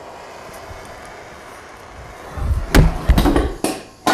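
A lit propane torch being dropped: a low rumble, then several sharp clattering knocks within about a second as the metal torch hits and bounces, its flame blowing out.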